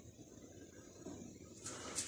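Quiet pause between speech: only faint background noise, rising slightly near the end.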